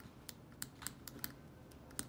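Rotring 800 metal ballpoint pen writing on paper: a faint string of light, irregular ticks as the tip touches down and moves through the strokes of the letters.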